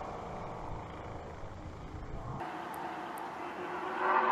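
Faint go-kart engines running in the distance, with a low rumble that stops abruptly about two and a half seconds in.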